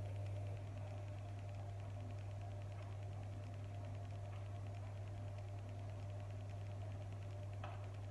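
Steady low background hum with no other clear sound, and a faint light tap near the end.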